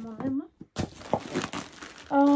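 Plastic bag being handled and crinkled, starting about a second in, after a few words.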